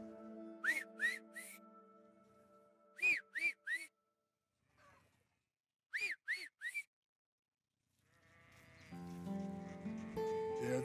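A man calling sheep with short whistles that rise and fall in pitch, in three quick bursts of three notes, a few seconds apart.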